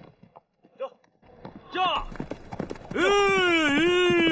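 Horses' hooves clattering on the ground and growing louder as a group of riders approaches, with short "giddy-up" shouts early on. In the second half a rider gives a loud, long drawn-out "whoa" call to rein the horses in.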